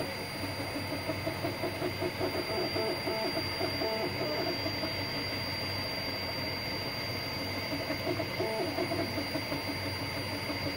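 Anet A6 3D printer running mid-print: its stepper motors whine in shifting, gliding pitches as the print head moves, over the steady hiss and high tones of its cooling fans.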